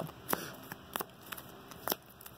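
Sleeved trading cards being picked up off a playmat by hand and gathered into a stack: a few light clicks and taps, the sharpest one near the end.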